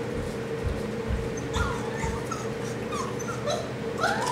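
Small white fluffy dog whimpering: several short, high, wavering whines, starting about one and a half seconds in.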